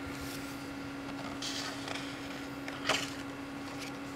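A page of a hardcover book being turned by hand: a soft paper rustle, then a short crisp flip of the page about three seconds in, over a steady hum.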